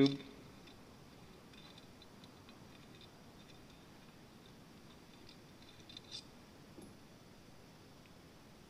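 Faint small clicks and taps of a carburetor emulsion tube being fitted into the carburetor body by hand, with one slightly sharper click about six seconds in.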